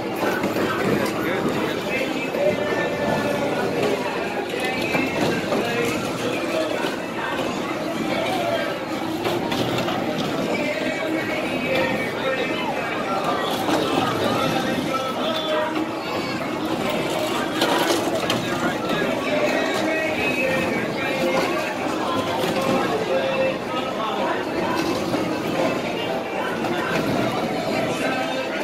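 People's voices mixed with country square-dance music from the ride's loudspeakers, running steadily without a break.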